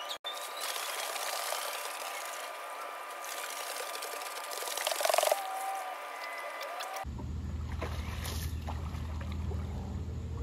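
Pool water splashing and sloshing as a swimmer moves and turns at the wall, with the loudest splash about five seconds in. It quietens after about seven seconds.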